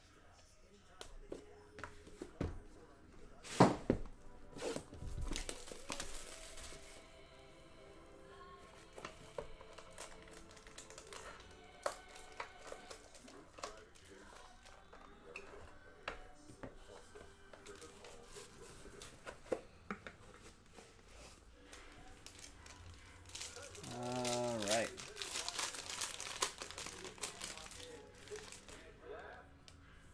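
Hands handling a cardboard trading-card box and its foil-wrapped pack: scattered clicks and knocks, the loudest a few seconds in, then rustling. Near the end comes a longer stretch of foil crinkling and tearing as the pack is opened.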